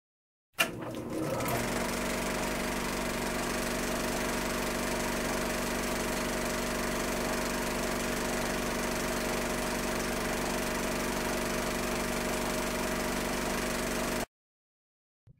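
Film projector running: a click about half a second in, then a steady mechanical whir and clatter.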